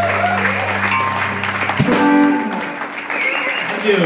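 A live electric band with guitars and drums holds its final chord, which stops abruptly about two seconds in. Audience applause and cheering follow.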